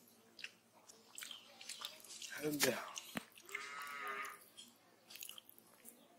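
Faint, scattered crunches and clicks of a knife cutting. A short voice comes about two and a half seconds in, then a brief high-pitched sound.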